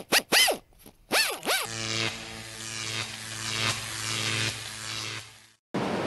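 Synthetic sound effects of an animated logo intro: a quick run of about six short zaps that sweep up and down in pitch, then a steady low electric buzz that holds for about three and a half seconds and cuts off.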